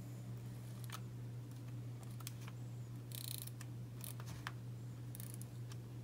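Correction tape being run across planner paper in two short, scratchy strokes, with a few light clicks of the plastic dispenser in between, over a steady low hum.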